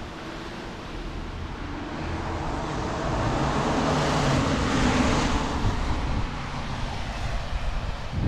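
A vehicle passing by on the road, its noise swelling to a peak about halfway through and then fading away.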